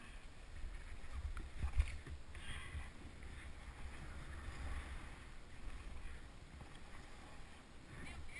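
Snowboard sliding and carving through soft snow, with wind rumbling on the action camera's microphone and one louder bump about two seconds in.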